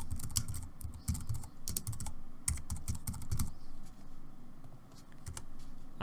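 Typing on a computer keyboard: a quick, uneven run of key clicks, with a short lull about four and a half seconds in.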